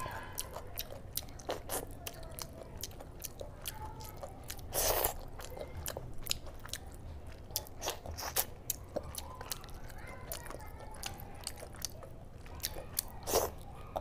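Close-miked eating sounds of rice and mutton curry eaten by hand: wet chewing and lip-smacking with many sharp mouth clicks. Two louder bursts come about five seconds in and near the end.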